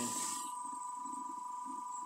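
Steady high-pitched electrical whine from a running battery-powered motor and booster circuit, with a faint low pulsing beneath it about four times a second.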